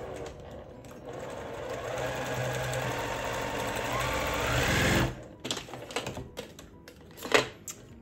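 Domestic electric sewing machine stitching a seam for about five seconds, speeding up just before it stops abruptly. A few light clicks and taps follow.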